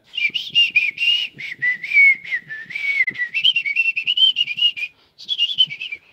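A person whistling a meandering tune, one clear pitch sliding up and down in short phrases, with a brief pause about five seconds in.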